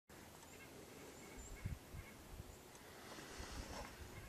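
Faint, short bird chirps in quiet outdoor air, with a few low thumps on the microphone, the loudest under two seconds in.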